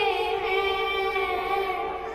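Girls singing an Urdu naat into microphones, amplified through a PA, holding one long note that eases off near the end.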